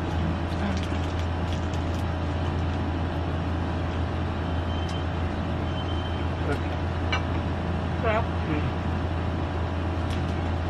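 Steady low hum over a constant rumbling background noise, like road traffic or a motor running, with a few faint clicks and a short spoken word near the end.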